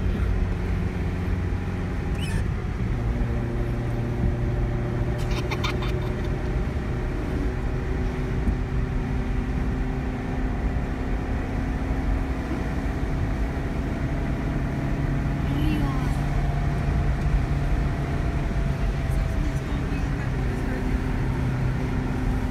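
Steady road noise heard from inside a moving car's cabin: the engine running and the tyres rolling on the highway, with the engine note drifting slowly up and down.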